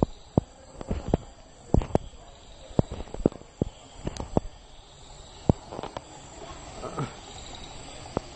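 An irregular series of sharp pops and knocks, a dozen or more, coming thickest in the first half, over a steady hiss.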